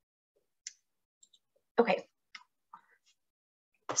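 Mostly dead silence broken by a few brief, faint clicks, with a single spoken "okay" about two seconds in.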